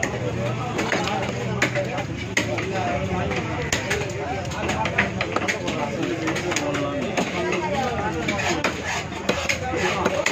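Large knife chopping a pomfret on a wooden block: a series of sharp knocks, unevenly spaced, as the blade cuts through and strikes the wood. Steady chatter of voices runs underneath.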